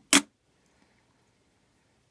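A single sharp click as a worn Morgan silver dollar is set down on the metal platform of a digital pocket scale, then near silence with one faint tick.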